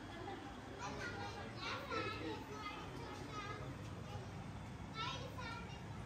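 Children's voices: high-pitched chatter and calls, in two spells, about a second in and again near the end.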